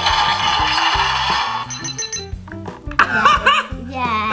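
Mega Treasure Bot toy robot's electronic sound effect: a loud hissing, crackling burst lasting about two seconds, set off by pressing its button. Background music with a steady stepped bass line runs underneath.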